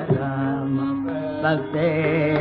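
Carnatic classical vocal music from an old live concert recording: a male voice holds a long, steady low note while a wavering melodic line moves above it. The sound is dull and muffled, as in an old recording.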